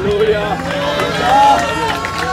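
Several voices of a church congregation overlapping at once.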